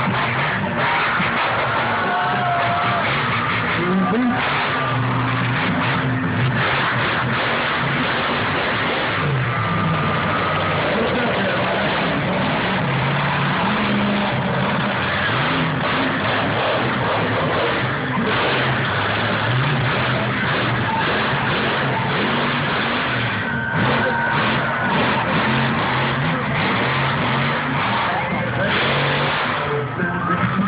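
A lifted 4x4 mud truck's engine revving up and down again and again as it drives a freestyle dirt course, with crowd noise underneath.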